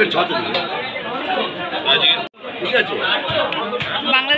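Several people talking at once: overlapping chatter. The sound cuts out sharply for an instant a little past halfway.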